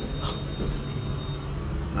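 Elevator cab ventilation fan running with a steady low hum, plus a faint high-pitched whine that stops about a second and a half in.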